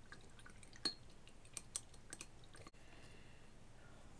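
A few faint, light clicks and taps as a paintbrush and small craft items are handled at the worktable, over a low steady room hum.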